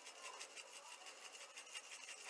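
Faint, rapid scratchy rubbing strokes from seasoning being worked into ground venison sausage.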